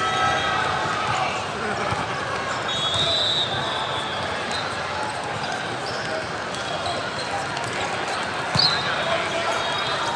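Busy volleyball tournament hall: many voices chattering, with echoing thuds of balls from the surrounding courts and a few brief high squeaks.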